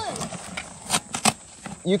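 Cardboard box being pulled apart by hand: a few short crackles and snaps of the board.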